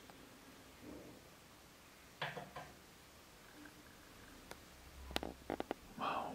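Mostly quiet room tone with a faint brief rustle about two seconds in and a quick cluster of sharp clicks near the end.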